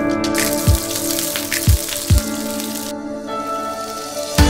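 Background music with a steady beat over curry leaves and tempering spices sizzling in hot oil in a frying pan; the sizzle cuts off abruptly about three seconds in.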